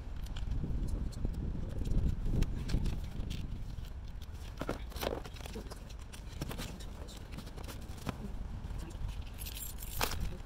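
Wind rumbling on the microphone, with scattered clicks and light rattles of a metal solar-panel bracket and its bolts being handled during assembly, and a short rustle near the end.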